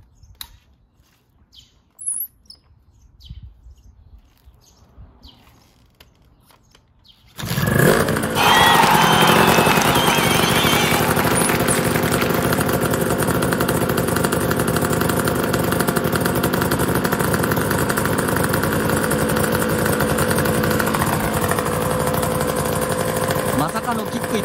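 Honda NSR250R's two-stroke V-twin engine catching about seven seconds in, on its first start after the pulse generator was replaced, then running steadily.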